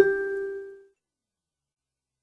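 A single chime-like note struck once at the change of picture, ringing and fading out within about a second.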